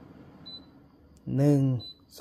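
Short, high electronic beeps from an air purifier's controls, one about half a second in and another near the end, as its fan-speed setting is stepped up, with a small button click just after a second.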